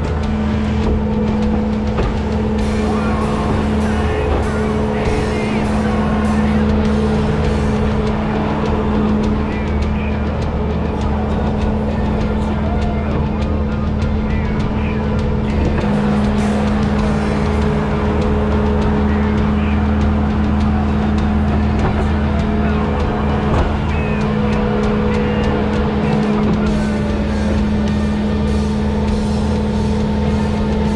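Bobcat S650 skid-steer loader's diesel engine running steadily while loading sand, heard from the operator's seat, with music playing over it.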